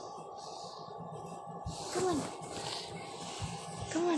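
A baby's short vocal sounds: two brief coos that fall in pitch, one about halfway through and one at the end, over a steady low hum.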